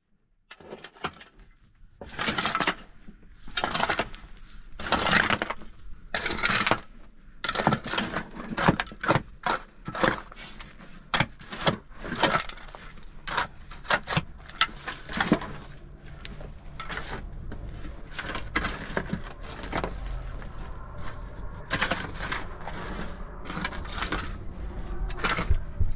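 Steel shovel blades scraping and digging into dry, stony soil, in quick irregular scrapes and crunches, with a run of them about two seconds in. In the last third the strokes run together into a steadier scraping.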